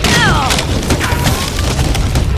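Edited cartoon-style sound effects: a loud, continuous crackling and splintering rumble, with a falling tone in the first half second, standing for a rubber-band-wrapped watermelon straining to burst.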